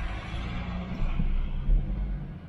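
Inside the cab of a Ford Raptor pickup truck on the move: a steady low rumble of engine and road noise, with a brief heavier low thump near the end.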